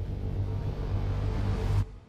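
Steady low rumble of a train in motion, played as an effect for a mock train carriage, cutting off abruptly near the end.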